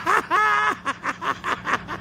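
A man laughing: one drawn-out laugh, then a run of short chuckles, about four a second.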